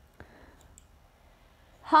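A single short click about a quarter of a second in, followed by faint room hiss. A woman's voice begins at the very end.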